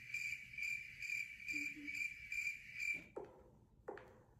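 Cricket chirping sound effect: an even, pulsing chirp about two and a half times a second that cuts off abruptly about three seconds in, followed by a couple of faint clicks.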